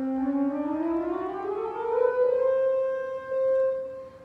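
Pipe organ playing an ascending chromatic scale, every white and black key from one C up to the C an octave above, climbing over about two seconds. The top C is then held until near the end.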